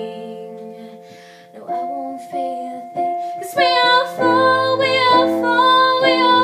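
Piano: a held chord fades out, then a few single notes and chords are played, and about three and a half seconds in a woman's singing voice comes back in over fuller, lower piano chords.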